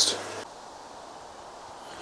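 The last word of a man's speech, with a steady low hum that cuts off about half a second in, followed by faint, steady outdoor background hiss with no distinct events.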